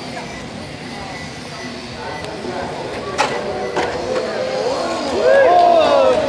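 Electric motors of Tamiya M-chassis RC cars whining, the pitch rising and falling with the throttle as the cars race past. The sound grows louder near the end. There is one sharp click about three seconds in.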